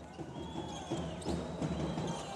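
Basketball arena ambience during live play: crowd noise with music in the hall and a few faint knocks from the court.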